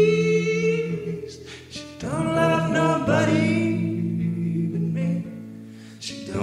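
Acoustic, country-tinged rock band playing live, with a voice holding long sung notes over the instruments. One held note ends about a second in, and a second long note starts about two seconds in and fades near the end.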